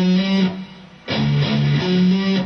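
Distorted electric guitar in drop D tuning playing a metal riff. A held note dies away about half a second in. After a brief gap come two short palm-muted picks on the open low D string, then a higher note on the A string near the end.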